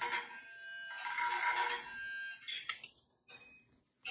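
Bagpipe music with held drone-like notes as the tune ends, fading out by about three seconds in. A couple of faint clicks come just before it stops, then near silence.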